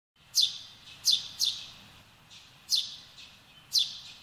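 A small songbird giving sharp, high chirps that each drop quickly in pitch: five clear ones at uneven intervals, with fainter chirps between them.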